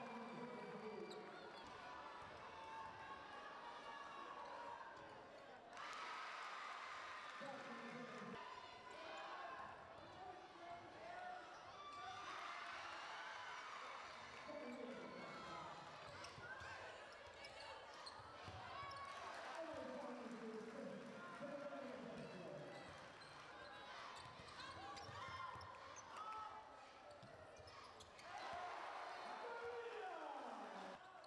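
Game sound in a basketball arena: a ball dribbling on the hardwood court, with indistinct voices from players and crowd. The sound changes abruptly a few times.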